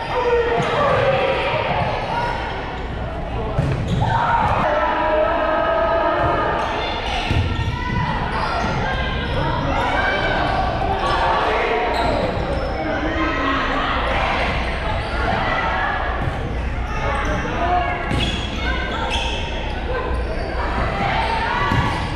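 Echoing gymnasium sound of players and spectators chattering and calling out, with repeated thumps of a volleyball being hit and bounced on the hardwood floor.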